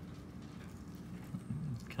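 Quiet room tone: a steady low hum with no distinct event. Speech starts right at the end.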